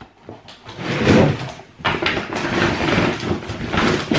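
Rustling and crinkling of plastic food packaging as groceries are rummaged through and lifted out, loudest about a second in.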